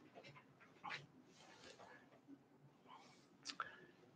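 Near silence: room tone with a few faint, brief sounds, about one second in and again near the end.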